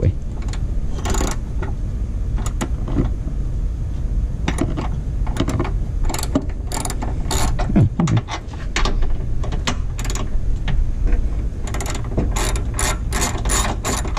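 Hand ratchet wrench clicking in short runs of rapid clicks as it is swung back and forth on a bolt, the pawl ratcheting on each return stroke; the runs come quicker near the end.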